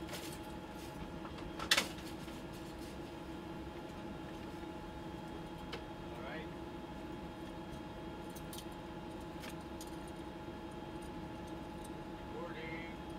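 Steady hum of the space station's cabin fans and life-support equipment, holding several steady tones, with one sharp click about two seconds in and a few fainter ticks later.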